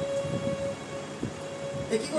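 A harmonium holds a single steady note, heard through the stage sound system over a low, uneven rumble.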